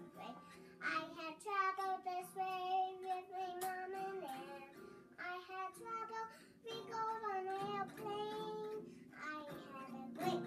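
A young girl singing several held, wavering phrases with short pauses between them, accompanied by a small acoustic guitar.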